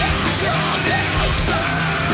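Rock band playing live and loud: electric guitars and a drum kit.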